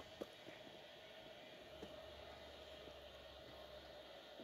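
Near silence: room tone, with a couple of faint clicks from plastic Lego pieces being handled and locked into place.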